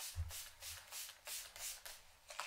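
Hands rubbing and stroking through a mannequin head's long hair, a rhythmic hiss of about three strokes a second.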